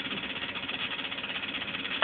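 Van de Graaff generator's electric motor and belt running steadily at nearly full power.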